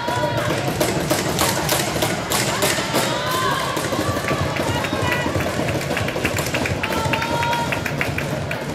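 Ice rink ambience: people's voices talking, echoing in the arena, over a run of sharp taps and knocks, about three a second, in the first half. The taps fade to fainter ticks later.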